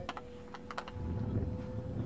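Handling noise on a handheld camcorder: a handful of sharp clicks in the first second, then a low rumble.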